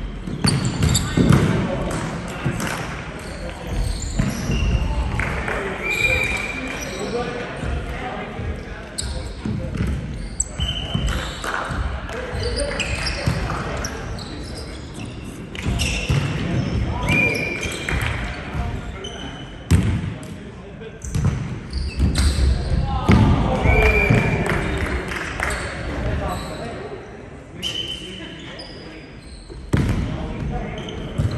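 Indistinct voices echoing around a large indoor gym, broken by several sharp smacks of a volleyball being hit and a few short high squeaks.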